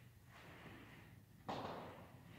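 A person breathing hard through sit-ups on an exercise ball, with a sharp, louder exhale about one and a half seconds in.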